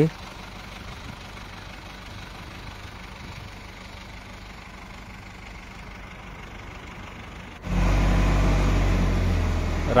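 Case IH 4230 tractor's diesel engine idling steadily with a low hum. About three-quarters of the way through it jumps abruptly louder and fuller.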